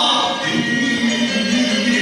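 A man singing a Peking opera aria, holding long notes that slide up and down in pitch.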